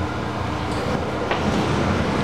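Steady low background rumble with a faint hum and no distinct event.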